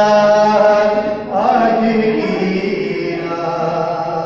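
A man singing a Hindi song into a handheld microphone, drawing out long held notes: one lasting about a second, then after a short break a second one held to the end.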